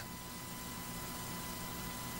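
Steady low hiss of room tone and recording noise, with a faint steady high-pitched whine underneath.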